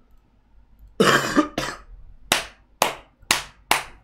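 A short throaty vocal burst, like a cough or laugh, then four sharp hand claps about half a second apart.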